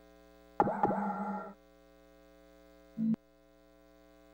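Steady electrical mains hum, with a louder electronic tone starting about half a second in and lasting about a second, and a short low blip near the three-second mark.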